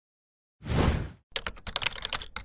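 Intro sound effects for an animated title: a short loud hit about half a second in, then a rapid run of sharp clicks like typing, about ten a second.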